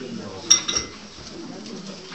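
Two short, high ringing clinks about a fifth of a second apart, like china being knocked, over low room chatter.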